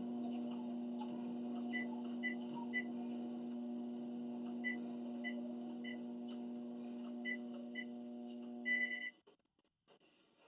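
A treadmill motor running with a steady hum while the console gives short high beeps in little groups as its buttons are pressed. A longer beep comes just before the end, and then the motor stops abruptly, leaving near silence.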